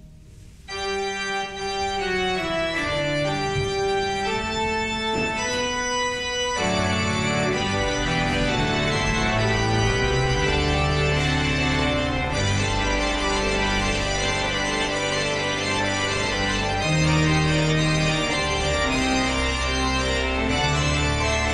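Church organ playing: after a brief pause, a light melody over held notes, then the full organ with deep bass pedal notes comes in about six or seven seconds in and carries on.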